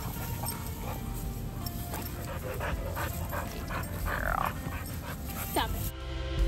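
Two dogs playing together, panting, with a short whine about four seconds in and a falling whine just before the end.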